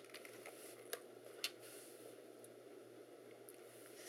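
Near silence with a few faint clicks in the first second and a half, from an IBM ThinkPad's plastic case being handled and its lid opened.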